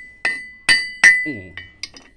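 Claw hammer striking pyrite on a steel plate: three hard blows, then two lighter taps near the end, each with a clinking metallic ring. The pyrite is being pounded into sand-like grit, the sign that it is brittle pyrite with no gold in it.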